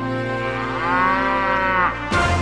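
A cow's long moo over wrestling entrance-theme music. Its pitch dips and then climbs toward the end, and it stops just before a crash in the music.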